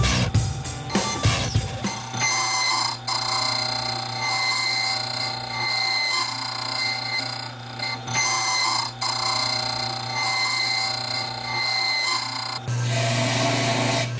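Key-duplicating machine running as its cutter wheel cuts a copy of a house key: a steady high-pitched whine with brief breaks about three, seven and a half and nine seconds in. Near the end it gives way to a lower hum.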